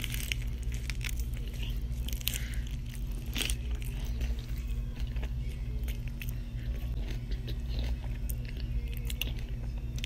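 A person biting into and chewing a mouthful of a raw vegan wrap rolled in a green leaf, with many small, sharp clicks as the food breaks between the teeth. A low steady hum runs underneath.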